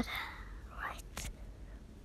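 Quiet, breathy whispering from a person, with two short clicks a little after a second in.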